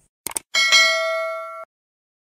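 Subscribe-button animation sound effect: a quick pair of mouse clicks, then a bright bell ding that rings for about a second, fading, and cuts off abruptly.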